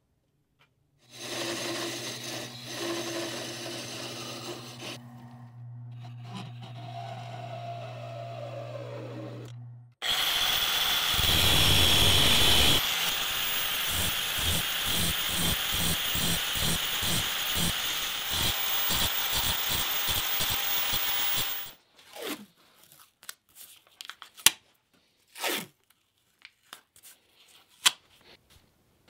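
Wood lathe motor running with a steady hum for about nine seconds, then a louder, harsh, pulsing grinding or cutting noise from a power tool for about twelve seconds, ending abruptly and followed by a few knocks.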